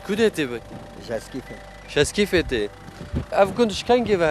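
Men talking in short phrases with brief pauses between them.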